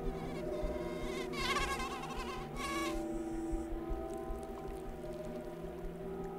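A mosquito's wing whine, a brief wavering buzz lasting about a second and a half, over a low sustained music drone.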